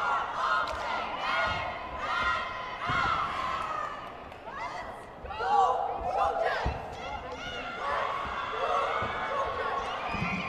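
Cheerleading squad shouting a cheer together over crowd noise, with occasional thuds from stunts and stomps on the mat.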